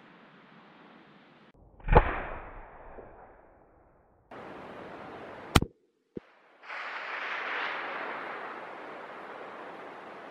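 A 7mm Remington Magnum rifle shot about two seconds in, its report echoing around the valley and fading over about two seconds. A second, shorter sharp crack follows about five and a half seconds in, then a steady outdoor hiss of wind.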